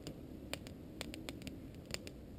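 Wood campfire crackling, with irregular sharp pops, the loudest just before the end, over a low steady rumble, muffled as heard through a camera's waterproof housing.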